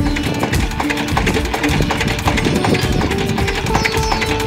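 Instrumental background music: plucked strings over a busy percussion rhythm.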